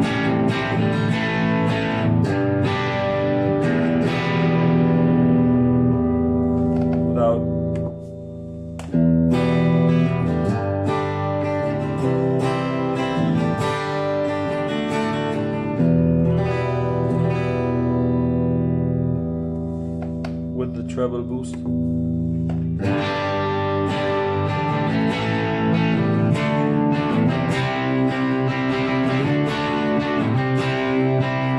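Electric guitar (Epiphone Les Paul, bridge pickup) played through the Boss GT-1000's treble boost, set with drive at 50, tone at zero and level at 50. Chords are strummed and left to ring, heard through studio monitors, with a short dip about eight seconds in and fresh chords struck around 9, 16 and 23 seconds.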